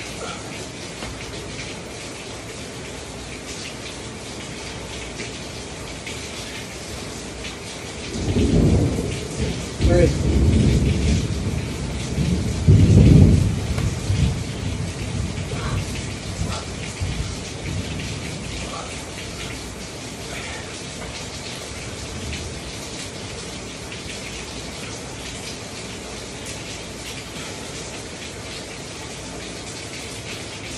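Heavy rain pouring steadily, with a long roll of thunder that builds from about eight seconds in, is loudest a few seconds later and dies away by about twenty seconds.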